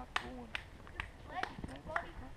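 Footsteps of a runner on a dirt and rock trail, a regular crunching step about twice a second, with faint voices in the background.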